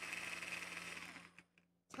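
Small rechargeable electric mini food chopper running, its motor and spinning blade giving a steady high buzzing whir that stops about a second and a half in.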